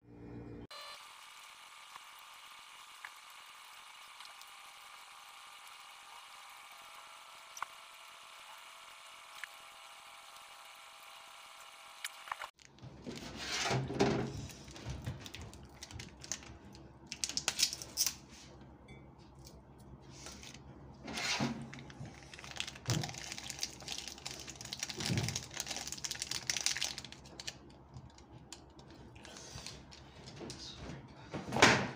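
A faint steady hum for the first twelve seconds, then irregular knocks, clatter and handling sounds of a ceramic cup and other things at a stainless-steel kitchen sink.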